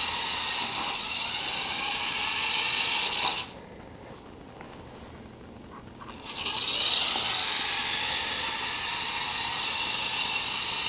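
Small electric motor and plastic gears of a toy radio-controlled truck whining steadily as it drives in reverse. It cuts out about a third of the way in and starts up again about three seconds later.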